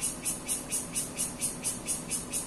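Cicadas calling in a tree: a high, rapid, evenly pulsing buzz, several pulses a second.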